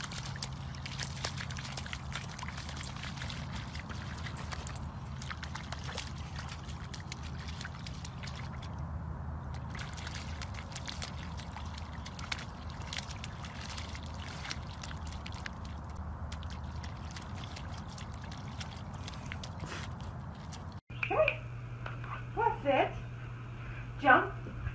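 A puppy's paws splashing and squelching through mud and shallow puddle water, a dense run of small wet splashes. Near the end the sound cuts to a person's voice talking.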